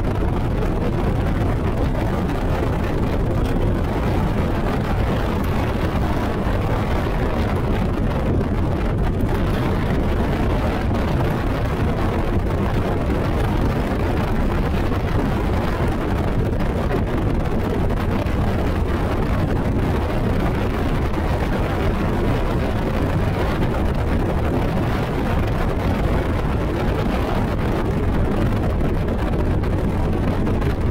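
Yamaha VMAX SHO 250 V6 four-stroke outboard running flat out on a bass boat at top speed, about 76 mph, largely covered by steady wind rush over the microphone and hull noise on the water.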